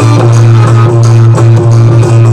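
Instrumental passage of a Rajasthani devotional bhajan, without singing: a harmonium holding a steady low note over a steady percussion beat.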